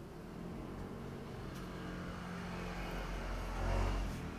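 A road vehicle passing by: a low engine rumble and tyre noise that swell steadily and are loudest near the end.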